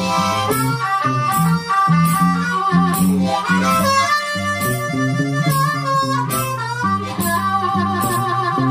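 Live acoustic blues: a harmonica playing held and bending melody notes over an acoustic guitar keeping a steady rhythmic bass-and-strum accompaniment.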